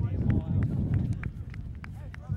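Distant shouts and chatter from players and spectators on an outdoor soccer field, over a steady low rumble, with a few faint clicks.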